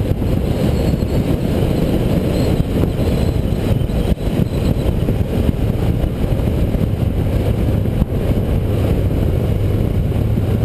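Sport motorcycle cruising at a steady speed, recorded from the bike itself: a continuous engine drone buried in heavy, low wind rush on the microphone.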